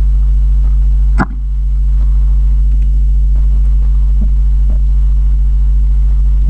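Loud steady electrical mains hum, a low 50 Hz buzz with its overtones, picked up by the recording's microphone. One sharp click comes about a second in, and a few faint ticks of keyboard typing follow.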